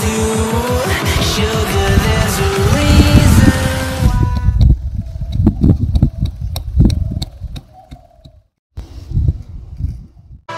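A pop song plays for about four seconds and then cuts out. Irregular scraping and knocking follows, from a flat metal blade digging into dry, sandy soil.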